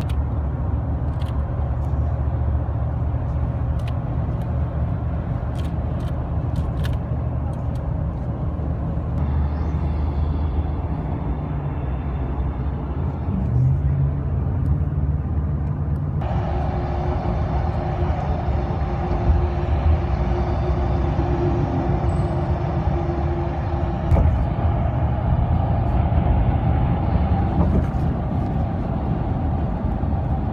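Road and engine noise inside a moving car's cabin at highway speed, a steady low rumble. About two-thirds of the way through the sound changes abruptly and turns brighter, with a low steady tone held for several seconds.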